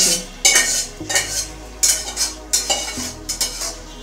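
A metal spoon scraping and knocking against a steel bowl as its contents are scraped out into a wok, in about half a dozen separate strokes.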